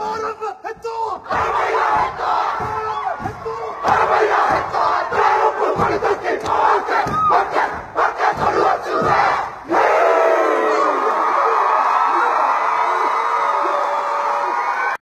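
Kapa haka group performing a haka: many voices shouting the chant together over heavy thuds of stamping and body slaps. Near ten seconds the shouting cuts off briefly, and a long held group cry follows to the end.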